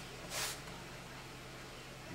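A cloth rag rubbed once across the wooden top of an acoustic guitar, working wood glue down into an open top seam, followed by a faint steady low hum.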